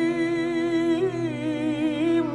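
Music from a Turkish song: a voice holds a long note that starts to waver about a second in, over a sustained accompaniment.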